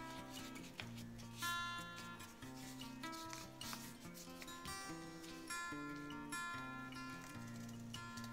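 Background music with slow, held notes that change about every second, under a faint rustle of construction paper being handled.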